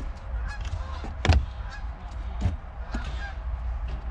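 A few sharp clicks as bare power-seat harness wires are touched to the terminals of a cordless-drill battery, the loudest about a second in and another past the middle, over a steady low rumble.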